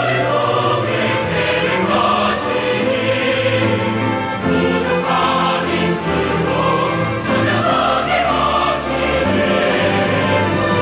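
Mixed church choir singing a hymn in Korean, many voices in sustained full chords.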